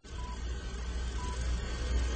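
Film-leader countdown sound effect: a short high beep once a second over a steady low hum and hiss, like an old projector.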